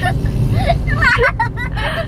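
Steady low road and engine rumble inside a moving car's cabin, with a high-pitched voice breaking in over it from about halfway.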